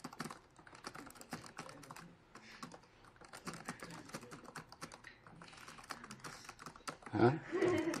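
Computer keyboard being typed on: a quick, irregular run of keystroke clicks, with a short spoken "huh?" near the end.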